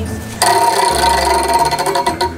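Prize wheel spinning, its pointer ticking rapidly over the pegs in a fast, even run. Starting about half a second in, it plays over a steady held chord of background music.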